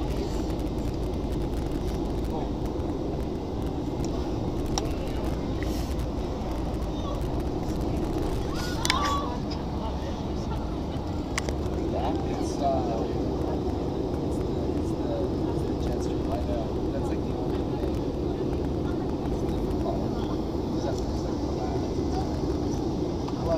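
Steady roar of jet engines and rushing air inside the cabin of an Airbus A320-family airliner climbing after takeoff. Faint voices come through briefly about midway.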